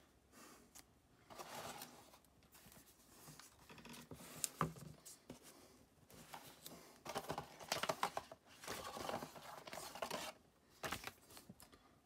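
Hands handling unboxing packaging: irregular rustling and scraping of the tablet's plastic film and of card and cardboard as a quick start guide is pulled from the box, with a few sharp clicks, busiest in the second half.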